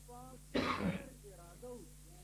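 A man clears his throat once, in a short rasping burst about half a second in.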